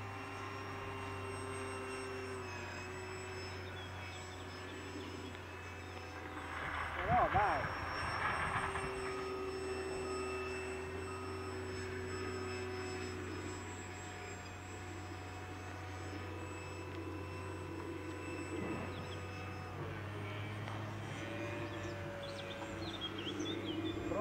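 Distant electric RC flying-wing model in flight: its Sunnysky X2208 brushless motor and 8x3.8 APC propeller giving a steady whine whose pitch shifts a few times with the throttle. A brief louder sound breaks in about seven seconds in.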